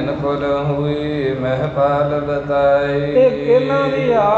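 A man's voice chanting in a slow, sung melody with long held notes.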